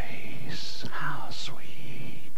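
A man whispering the words of a song rather than singing them: breathy, unvoiced speech with sharp hissing s-sounds, the way persecuted house churches whisper their songs.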